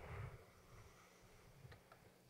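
Near silence: faint background noise, with a slight click near the end.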